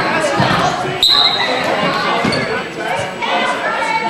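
A basketball bouncing on a hardwood gym floor amid shouting voices of players and spectators that echo in the hall, with a short shrill whistle blast about a second in.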